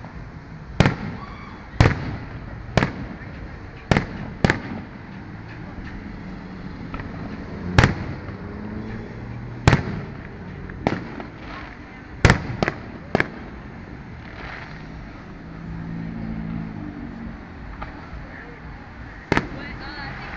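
Fireworks display: aerial shells bursting, about a dozen sharp bangs at uneven intervals, several in quick succession around halfway through, each trailing off in a short echo.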